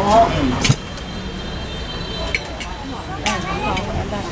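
Street background: a person's voice briefly at the start, then a steady hum of road traffic with a few sharp clicks.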